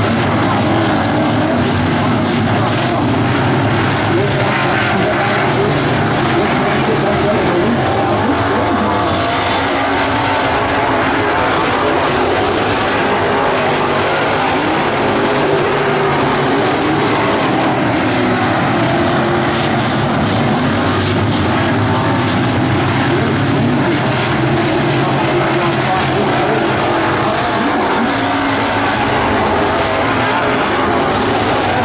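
A field of IMCA Modified dirt-track race cars at racing speed, their V8 engines blending into one loud, continuous drone whose pitch rises and falls as the cars pass through the turns and down the straight.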